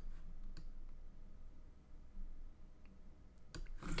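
A few sharp computer mouse clicks: one at the start, another about half a second later, and two close together near the end, over a faint steady hum.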